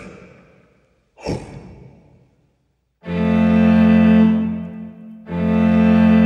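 A man's breathy sigh about a second in, then after a short silence an orchestral mockup's string section comes in halfway through, holding long low chords, with a fresh chord entering near the end.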